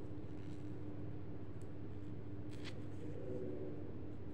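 Faint scratchy rustle of metal knitting needles and wool yarn being handled as stitches are picked up, strongest briefly about two and a half seconds in, over a steady low hum.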